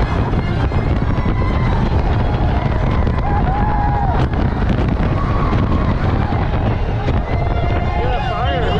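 Onboard roller coaster ride: wind rushing over the microphone and the train running fast along the track in one loud, steady roar.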